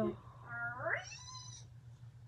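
A high, drawn-out meow-like cry that rises and then falls in pitch, starting about half a second in and lasting about a second, over a steady low hum.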